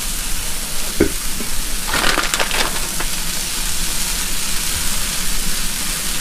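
Shredded cheese sizzling on a hot Blackstone flat-top griddle, a steady hiss with a burst of crackling about two seconds in.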